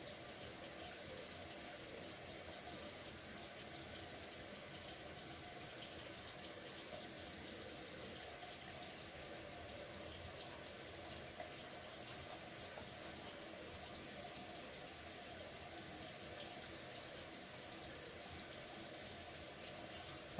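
Faint, steady rush of a water tap running into a sink.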